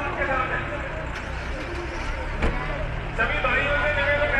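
Voices of a street crowd over the steady low rumble of an idling vehicle engine nearby. The voices grow louder from about three seconds in, and there is a sharp knock about two and a half seconds in.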